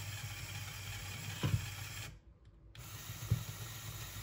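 LEGO Mindstorms motor whirring through a gear-reduction train as it lifts the claw, stopping for about half a second halfway through and then starting again. A sharp clack comes about a second and a half in, and another knock a little after three seconds.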